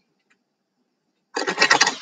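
Near silence, then about a second and a half in, a deck of affirmation cards being shuffled in a quick run.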